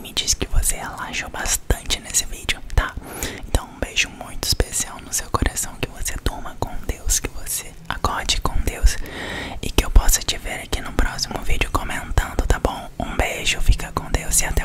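Dry mouth sounds made right against the microphone: a quick run of lip and tongue clicks and pops, mixed with soft whispering.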